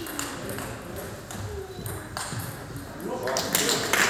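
Table tennis ball being played in a doubles rally: a few sharp clicks of the ball off bats and table, ringing slightly in a large sports hall.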